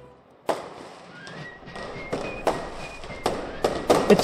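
Fireworks going off: a sharp bang about half a second in, then more bangs and crackling, with short high whistles in between.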